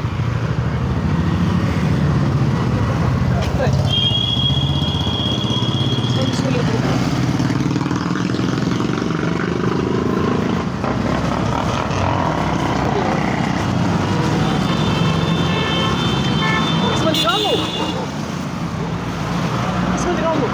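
Steady low rumble of a motor vehicle's engine running, with a high steady tone sounding twice, about four seconds in and again from about fifteen seconds.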